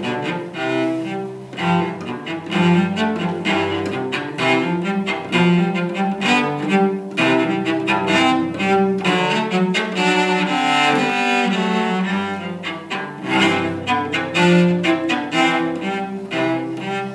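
Solo cello played with the bow: a concert étude in quick-moving notes that change several times a second, climbing into a brighter, higher passage about two-thirds of the way through.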